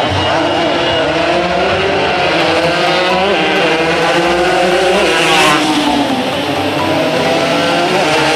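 Several racing motorcycle engines accelerating hard down a street, their pitch climbing and dropping back with each gear change. The sound is loudest as the bikes pass close about five and a half seconds in.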